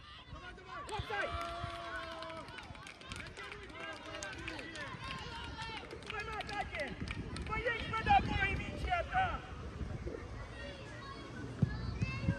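Distant shouts and calls of young footballers on the pitch during play, several voices overlapping at a moderate level.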